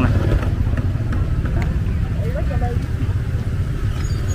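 Steady low rumble of motorbike and street traffic at a roadside market, with faint voices in the background.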